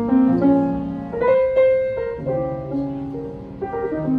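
Steinway grand piano played solo: chords struck every second or so and left to ring under a melody line, with a higher, louder passage about a second in.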